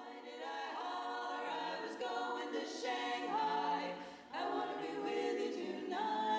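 Women's barbershop quartet singing a cappella in close four-part harmony, holding chords that change every second or so, with a brief break about four seconds in before the voices come back together.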